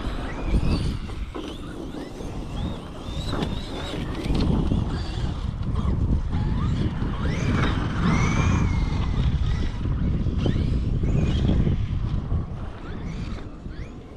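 Wind buffeting the microphone, with the faint whine of a large radio-controlled truck's electric motor rising and falling in pitch as it drives.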